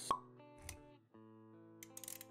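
Intro jingle for an animated logo: a single pop sound effect right at the start, then held musical notes. A brief low thump comes about two-thirds of a second in, and a few clicks come near the end.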